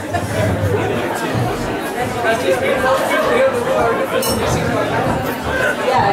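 Indistinct talking and chatter, with no other sound standing out.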